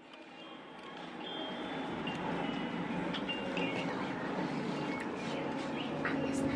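Soft, short chime tones at scattered moments over a steady hush, fading in over the first second or so.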